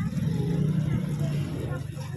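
Indistinct background voices over a low, steady rumble.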